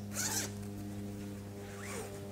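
A cloth bag being picked up and handled, with a brief fabric rustle about a quarter of a second in, over a low steady hum.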